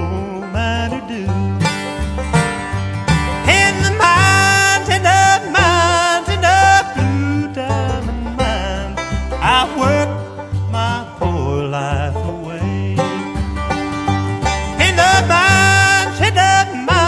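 Country song with bluegrass-style string instruments playing as background music, in a passage with no words sung.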